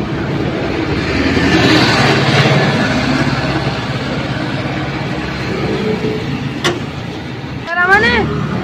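Road traffic noise, swelling about two seconds in as a vehicle passes, with a single sharp click near the end.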